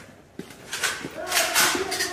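Indistinct voices of people talking and calling, with a sharp knock about half a second in.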